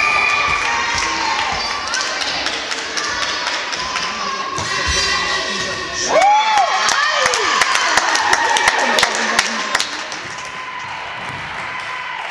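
Indoor volleyball rally: players and spectators shouting and cheering, with a run of sharp ball hits and thuds through the middle of the rally.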